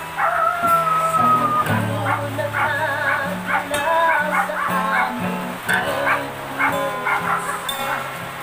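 Acoustic guitar playing an accompaniment while a woman sings along in a high voice, holding one long note near the start.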